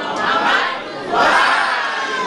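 A crowd of many voices shouting out together, swelling twice, the second time louder, a little after a second in.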